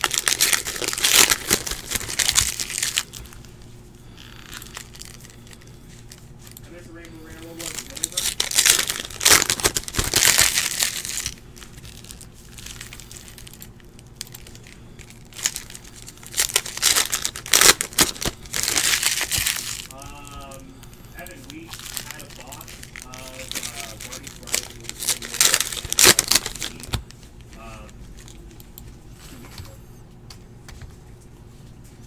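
Plastic foil wrappers of 2018 Panini Optic baseball card packs crinkling and tearing as packs are opened and the cards pulled out, in four bursts a few seconds apart.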